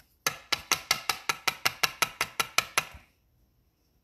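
A quick, even run of about fourteen sharp, ringing clicks, about five a second, that stops abruptly about three seconds in.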